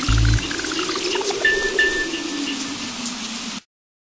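Synthesized sound effects over a steady crackling hiss: a deep boom at the start, a run of short beeps climbing and then falling in pitch, and two short high chirps about a second and a half in. It all cuts off abruptly just before the end.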